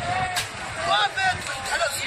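Speech: people talking, with one short sharp click about half a second in.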